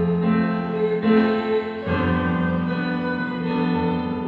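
Electronic keyboard playing sustained chords, changing to a new chord about two seconds in.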